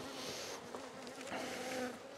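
Honey bees buzzing around an open nucleus hive, a steady hum that grows clearer for about half a second near the end.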